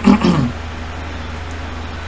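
A man's short wordless vocal sound, a drawn-out hum or groan falling in pitch, then a steady low hum for the rest of the time.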